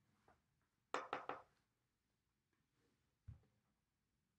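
Near silence in a small room, broken by a quick run of three light clicks about a second in and a soft low thump near the end.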